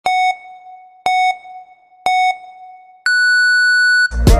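Film-leader countdown beeps as an intro sound effect: three short beeps a second apart, then one longer, higher-pitched beep about three seconds in.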